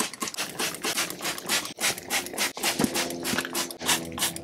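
Hand trigger spray bottle squirting diluted degreaser onto a bike frame in quick repeated pumps, about four to five sprays a second.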